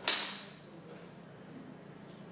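A single sharp clack as one rigid stick, sent along a whiteboard tray, strikes two others lined up end to end. This is an elastic collision that passes the momentum along as in a Newton's cradle. The clack fades within about half a second.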